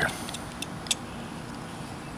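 Whittling knife cutting into a wooden carving: a few short, sharp clicks in the first second, the sharpest just under a second in, over a steady background hum.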